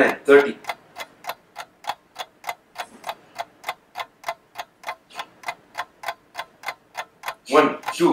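Steady, even ticking at about three to four ticks a second. A man's counting voice is heard at the very start and again near the end.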